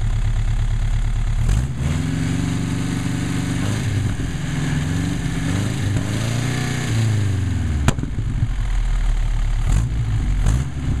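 Ford Model A four-cylinder engine with a Roof 101 Cyclone four-port overhead-valve conversion and cast-iron Y headers, idling with an even beat. About a second and a half in it is revved by hand at the carburetor, the pitch climbing and wavering for about six seconds before falling back to idle. A single sharp crack comes about eight seconds in.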